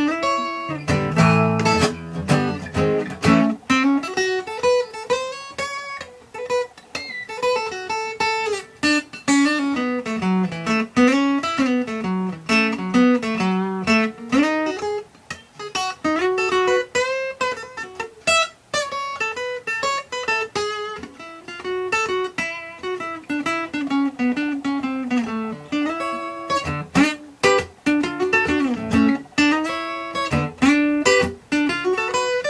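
Acoustic guitar playing an instrumental solo: a few strummed chords at the start, then picked single-note melody lines running up and down the neck.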